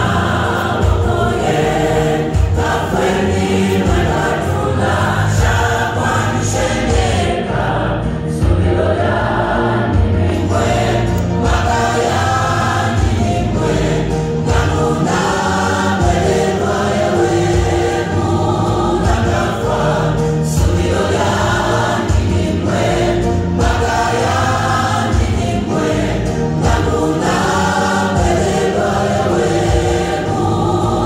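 Gospel choir singing, many voices together in harmony.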